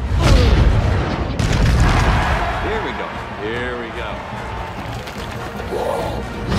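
Movie fight sound mix: heavy booming impacts of bodies colliding and smashing, one just after the start and another about a second and a half in, over a music score. Short vocal cries or grunts come in the middle.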